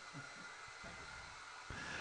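Handheld hair dryer running faintly and steadily, drying wet acrylic paint on a canvas.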